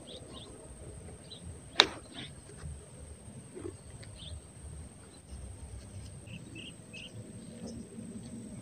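Outdoor ambience with faint, scattered short bird chirps over a low rumble, and one sharp click about two seconds in.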